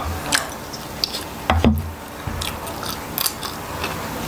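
A person biting and chewing braised chicken close to the microphone, with a series of sharp wet mouth smacks and clicks.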